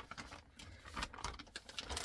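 Faint, irregular small clicks and rustles of a plastic mail package being handled and opened.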